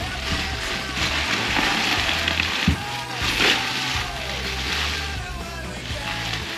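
Background music with a steady bass line, over the crinkling and rustling of plastic bubble wrap being pulled off a boxed brake caliper, with one short knock about halfway through.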